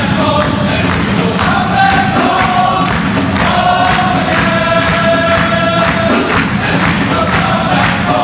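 Male choir singing together in harmony, with several long held notes in the middle, over a steady beat that the singers are clapping.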